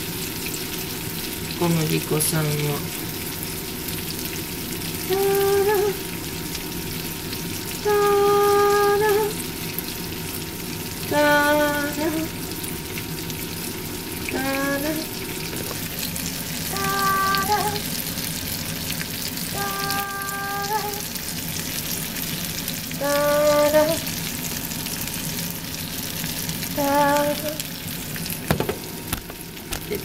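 Hamburger patties and sliced onions sizzling steadily in a frying pan, with a spoon stirring flour in the pan. Over the sizzle, a person's voice sounds about nine short held notes, one every few seconds.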